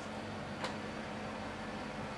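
Faint steady electrical hum and hiss of room noise, with one soft click about a third of the way in.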